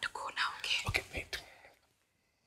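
Hushed whispered speech, a short exchange that trails off into quiet near the end.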